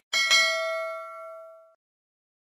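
A notification-bell 'ding' sound effect from a subscribe animation. It is two quick strikes close together that ring on and fade away over about a second and a half.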